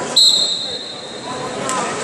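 A referee's whistle blown once, a sharp high blast just after the start that fades away over about a second. It stops the wrestling action. Crowd chatter in the hall runs underneath.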